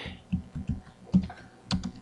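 Computer keyboard typing: a run of short, unevenly spaced keystrokes, about eight over the two seconds.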